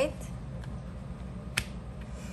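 A single sharp click about one and a half seconds in, made as hand-held tarot cards are set back down onto a spread of cards, with a couple of fainter card taps before it. A steady low hum runs underneath.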